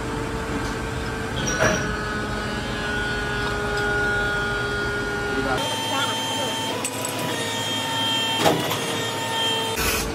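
Steady machine hum in a workshop, with two sharp metal clicks, one about a second and a half in and one near the end, as steel brake shoes are set against and lifted off a heated machine.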